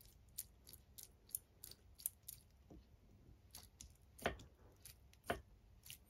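Faint, light clicks, about three a second, with two louder knocks about four and five seconds in.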